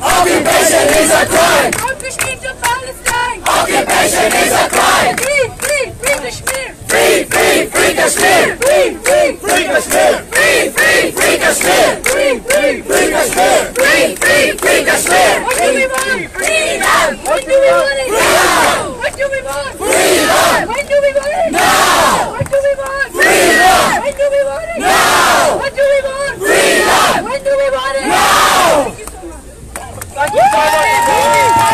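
Protest crowd chanting slogans together in loud shouts. From about 18 s in the chant settles into a steady rhythm of one shout about every second and a half, and it dies down just before the end.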